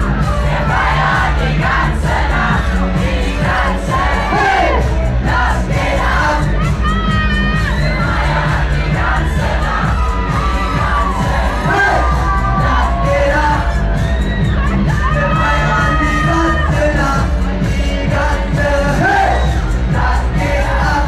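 Loud pop music played through a club PA, with a steady pounding bass and a singing voice, over the noise of a packed crowd.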